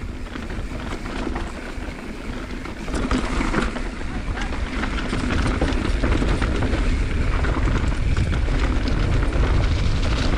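Mountain bike rolling down a dirt trail: wind on the camera microphone over tyre noise and the clatter of the bike over bumps, growing louder as speed builds about three seconds in.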